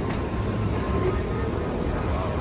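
Busy airport passageway ambience: a steady low rumble with faint background voices.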